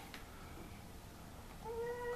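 A young child's high, drawn-out voice saying "bus" near the end, after a quiet stretch of room tone.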